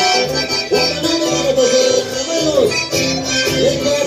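Live Andean carnival dance tune led by an accordion, with a steady beat underneath.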